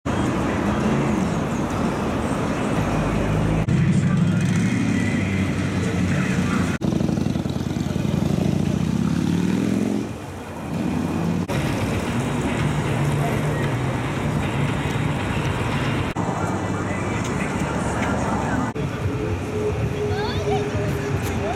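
Motorcycle engines running, one revving up in a rising pitch that breaks off suddenly about halfway through, with voices of a crowd behind; the sound jumps at several cuts.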